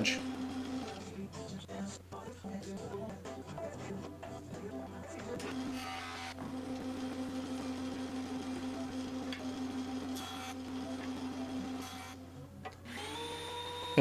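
Benchtop jointer running while a crotch walnut board is fed across its cutterhead to square the edge, a steady motor whine that cuts off about a second before the end.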